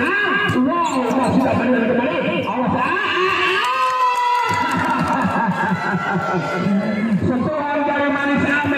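People's voices throughout: the match commentator talking, mixed with spectators and players calling out, with no clear words.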